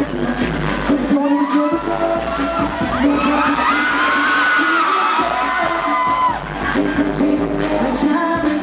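Pop song played loud over a concert PA, heard from among the audience, with fans cheering and whooping over the music.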